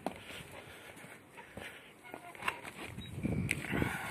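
A few light footsteps and scattered knocks while walking over paving, with a faint voice in the background from about three seconds in.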